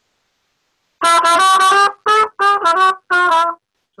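Red plastic cornet with plastic valves and a metal mouthpiece, played: a short run of about six loud notes of slightly differing pitch, starting about a second in.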